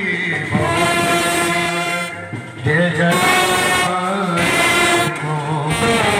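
Brass band of trumpets, trombones and euphonium playing a loud tune in long held notes, with brief breaks about two and four and a half seconds in.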